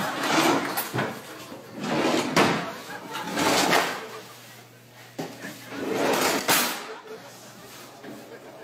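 Drawer fronts rattled and knocked in several noisy bursts, a second or two apart, as a child yanks at drawers that are fake and will not open.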